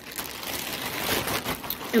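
Clear plastic poly bag crinkling irregularly as the clothing packed in it is handled.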